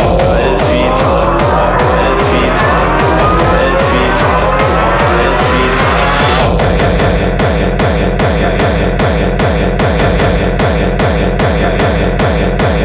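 Hardcore techno track with a fast, pounding kick drum. A rising synth build-up climbs through the first half, then about six and a half seconds in it breaks into a steady, chopped, pulsing beat.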